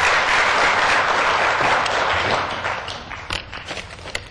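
Assembly members applauding together in a large council chamber. The applause is loudest at first, then dies away over the second half into a few scattered claps.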